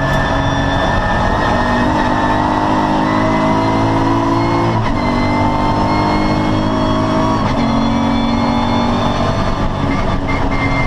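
VW Corrado's VR6 narrow-angle six-cylinder engine under full throttle, heard from inside the stripped race car's cabin. The note climbs steadily and steps in pitch about five seconds in and again about two and a half seconds later, as gears change.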